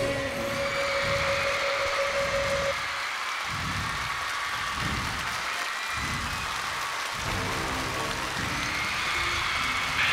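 Live arena concert audio. A held synth note cuts off under a third of the way in, and then an arena crowd cheers and screams over a slow, low pulsing beat as the intro of the next song builds.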